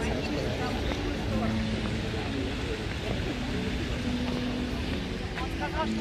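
Outdoor background of people's voices around a busy open plaza over a steady low rumble, with a few longer drawn-out tones.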